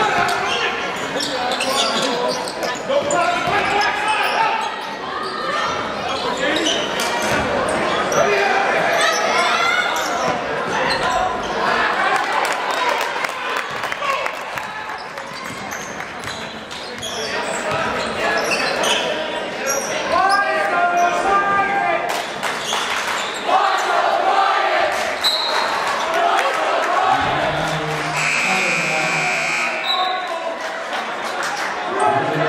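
A basketball bouncing on a hardwood gym floor during play, under the voices of a crowd of spectators filling the hall. Near the end a scoreboard buzzer sounds, one steady tone lasting about two seconds.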